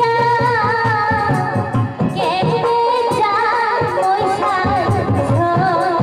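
A woman singing a Bhawaiya folk song live into a microphone, in long wavering melodic lines over instrumental accompaniment.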